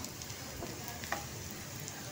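Chopped onions frying in oil in a stainless steel pan, a steady sizzle, stirred with a steel spoon that scrapes and taps the pan a few times.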